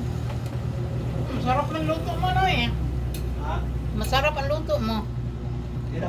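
A woman speaking in a few short phrases over a steady low rumble.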